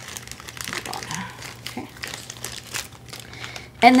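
Plastic packaging crinkling in many small irregular crackles as the silicone wire samples are handled and slid back into their little plastic tubing. A voice starts just before the end.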